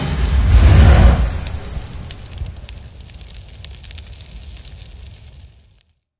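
Cinematic intro sound effect: a deep boom that swells and peaks about a second in, then fades away in a fizzling crackle of sparks, cutting off just before the end.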